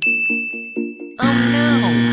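A bright chime-like ding, one high note ringing for about a second, then a louder cartoon wrong-answer sound effect with sliding tones over a steady low tone, marking a mismatched puzzle piece.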